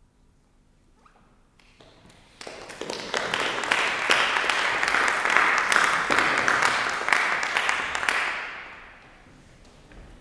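Audience applauding: starting about a second and a half in, swelling quickly, then dying away near the end.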